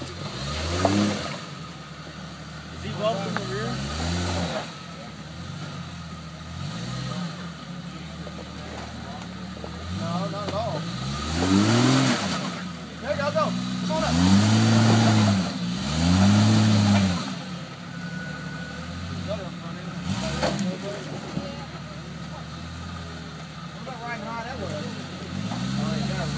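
Jeep Cherokee XJ engine revving again and again under load as it tries to climb a muddy creek-bed ledge. Each rev rises and falls in pitch, and two longer, louder revs come near the middle.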